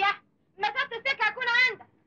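A woman sobbing in short high-pitched cries: one at the start, then a quick run of sobs from about half a second in, ending in a longer cry that rises and falls.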